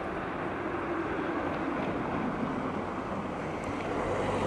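Street ambience: a steady hum of road traffic.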